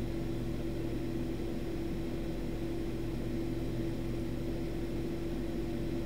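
A steady background hum with a constant low tone and a faint hiss, unchanging throughout: room noise such as an appliance or fan running.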